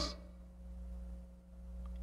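Faint steady electrical hum: a low hum with a thin, higher-pitched tone above it and no other sound.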